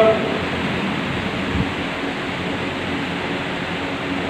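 Steady, even hiss of background noise in a mosque prayer hall, with no voice: the congregation stands silently between takbirs.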